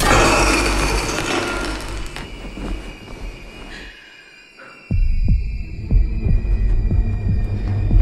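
Trailer sound design: a loud noisy hit that fades over a few seconds under thin, high, steady whining tones. After a short lull, a sudden deep boom sets off a run of low thuds about twice a second.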